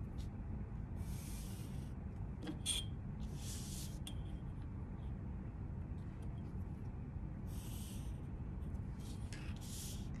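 A felt-tip marker drawn along a metal ruler on cardstock: four faint scratchy strokes, each under a second long, with a light tap between the first two, over a steady low room hum.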